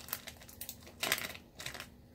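Small plastic zip-top bag being handled and pulled open: a run of light clicks and crinkles, with two louder crackles in the second half.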